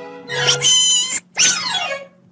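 Cartoon duck voices squawking over orchestral music: one cry lasting about a second, then a second cry that falls in pitch near the end.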